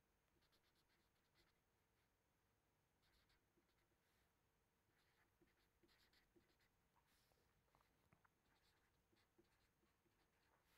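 Near silence, with the very faint, irregular scratching of a felt-tip marker writing on paper.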